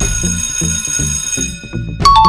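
An alarm-bell ringing sound effect signalling that the answer time has run out, fading away about a second and a half in, over a steady background music beat.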